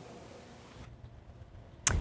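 Faint room tone that drops to near silence a little under a second in, as the broadcast audio switches from the live remote to the studio, then a single sharp click just before the next speaker begins.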